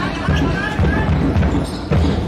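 Handball game in a sports hall: low thumps about twice a second, with voices.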